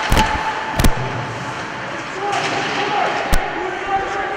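Ice hockey play in an indoor rink: sharp knocks of puck and sticks against the boards and ice. There is a cluster of knocks in the first second and another just past three seconds, over voices and rink noise.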